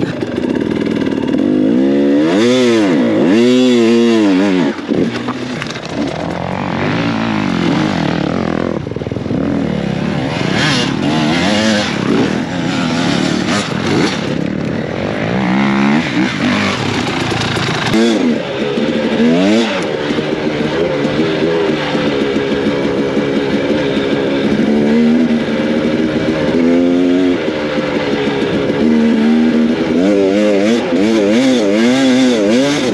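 Dirt bike engine revving up and down over and over as it is ridden off-road, its pitch climbing and dropping again many times.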